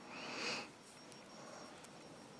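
A person's short sniff lasting about half a second.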